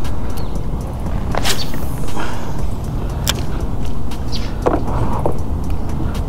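Steady low wind rumble on the microphone, broken by a few sharp clicks and a swish about a second and a half in: a spinning rod and reel being handled as a lure is cast out.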